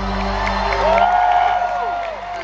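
A rock band's last chord rings out and fades as an arena crowd cheers; about a second in, a long whoop from the crowd rises, holds and falls away.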